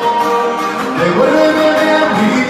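Live music from a duo: an acoustic guitar and an electric guitar playing together, with a man singing into the microphone.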